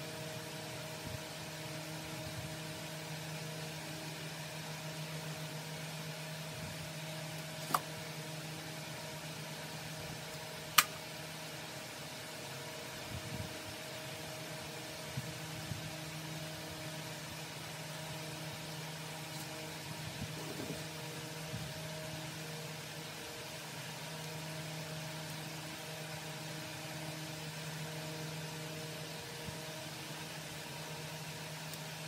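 A steady low machine hum runs throughout, with faint handling sounds as a flip-flop and a zip tie are worked by hand at a metal workbench. Two sharp clicks about three seconds apart are the loudest sounds.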